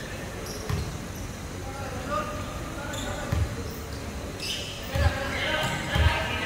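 A basketball bouncing on a hardwood court: three single, widely spaced bounces. Voices call out in the hall.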